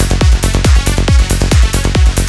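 Progressive psytrance music: a steady four-on-the-floor kick drum about twice a second, with a pulsing bassline filling the gaps between kicks and bright hi-hats above.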